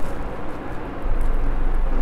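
Steady low rumble of vehicle noise with no clear events in it. It dips slightly about half a second in and comes back up a little after a second in.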